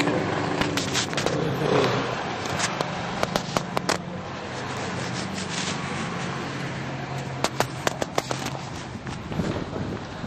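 City street traffic noise, a steady hum of cars going by. Two runs of sharp clicks and scrapes, about three seconds in and again near eight seconds, from the handheld camera being handled close to its microphone.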